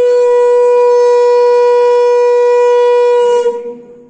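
Conch shell (shankha) blown in one loud, steady note that fades out about three and a half seconds in.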